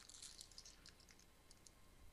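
Near silence: quiet room tone with a few faint, scattered light clicks.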